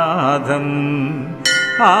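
A devotional Sanskrit stotram chanted to a melody, a line of the refrain ending in a long held note. About one and a half seconds in, a bell is struck once and rings, and the next line of chanting starts near the end.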